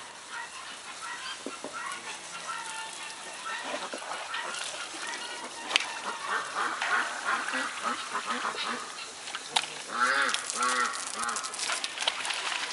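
A quick series of short, pitched animal calls near the end, each rising and falling, over a busy background of small rustles and clicks.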